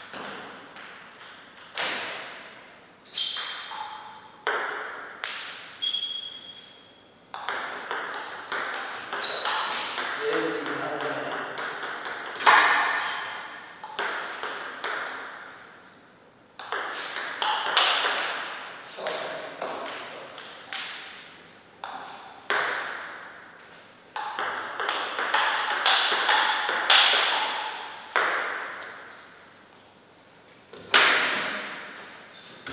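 Table tennis rallies: a celluloid ball clicking sharply off rubber bats and the tabletop in quick strings of hits, each click trailing off, with short gaps between points.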